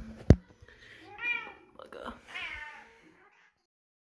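Cat meowing twice, each call about half a second long. A sharp knock about a third of a second in is the loudest sound.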